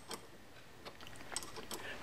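A few faint, irregular metallic clicks from a wrench working the nut of a quick-change tool post as it is tightened down on the lathe's compound.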